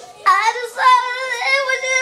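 A young girl singing without words, holding long wavering notes in two phrases that begin about a quarter second in, over a faint backing track.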